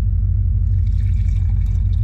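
Water pouring from a plastic gallon jug into a small plastic bottle, faint beneath a steady low rumble.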